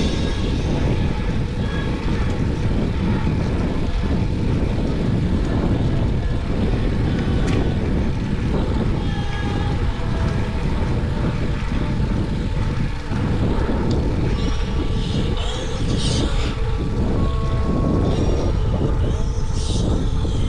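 Steady wind rush on the microphone with tyre rumble from a bicycle riding along a paved path.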